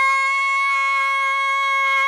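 A single long sung note run through autotune pitch correction, held at one dead-level pitch with no vibrato, so the voice sounds almost like a wind instrument.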